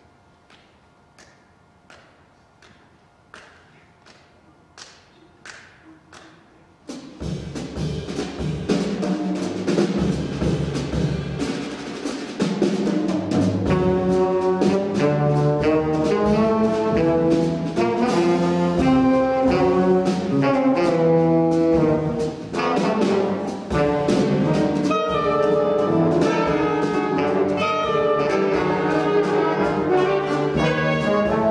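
A jazz big band begins a piece: about seven seconds of soft, evenly spaced taps that grow slightly louder, then the full band comes in loudly with brass chords over bass and drums.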